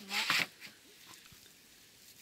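A brief scraping rustle as the plastic nest-box crate is handled in its straw-lined wooden frame, followed by faint rustling of straw.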